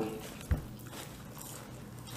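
A single short, soft thump about half a second in, like a bump against the table or microphone, over faint room noise.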